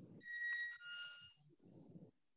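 An electronic two-tone chime: a steady higher note for about half a second, then a lower one of about the same length. A faint low rumble follows near the end.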